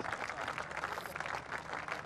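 Cricket crowd applauding steadily, fairly faint on the broadcast sound, as a dismissed batsman walks off after a long innings.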